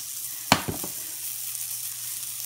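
Steady sizzle of food frying in nonstick pans, with one sharp knock about half a second in and a few lighter clatters after it as the shaken pan of spaetzle is set back down on the glass cooktop.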